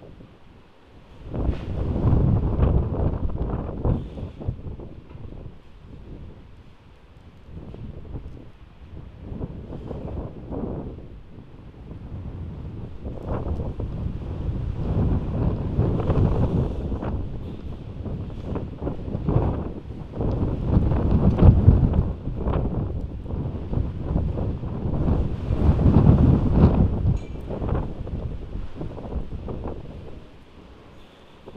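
Heavy wind gusting and buffeting the microphone, rising and falling in swells every few seconds, with the strongest gust about two-thirds of the way through.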